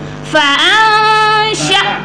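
A girl's voice reciting the Qur'an in the melodic tajweed style: about a third of a second in she rises into one long held note lasting about a second, then a short second note near the end.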